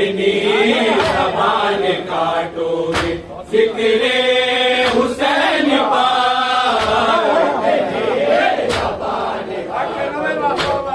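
A group of men recites a tarahi salaam in unison in a melodic, chanted style. Sharp slaps, typical of hands striking chests in matam, cut through it every second or two.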